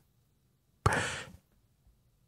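A man's single breath into a close microphone, a short sigh about a second in that starts sharply and fades over half a second, with silence around it.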